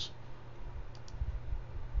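Two faint clicks of a computer mouse button about a second in, heard over a low steady hum.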